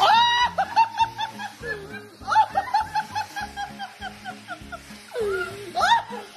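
A woman laughing in a quick run of high-pitched calls, several a second, over background music.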